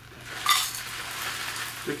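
Loose dry tea leaves pouring from a pouch into a tin canister: a steady dry hiss, with a louder burst about half a second in.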